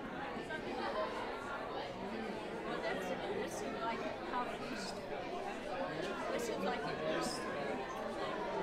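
Many people talking at once in a large hall: a congregation's chatter as they mingle and greet one another during the passing of the peace.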